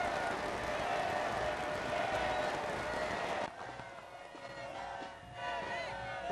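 A large outdoor crowd: many voices shouting and cheering together in a dense din, which drops off after about three and a half seconds. Single voices call out near the end.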